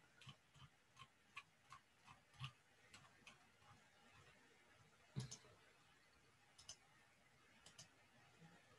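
Faint, quick clicks of a computer being used to page through a slideshow, about three a second at first. A somewhat louder knock comes about five seconds in, and a few more clicks follow near the end.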